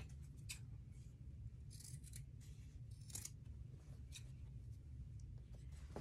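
Fabric scissors snipping through cloth, a faint run of irregular short snips, trimming the excess fabric off a sewn boxed corner of a tote bag.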